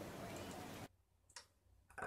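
Faint hiss from a playing web clip's soundtrack that cuts off suddenly just under a second in as the clip stops, followed by near silence with one brief click.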